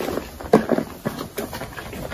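A block of soft, dusty gym chalk being crushed and crumbled by hand, giving a run of dry crunches. The loudest comes about half a second in, and they thin out after about a second and a half.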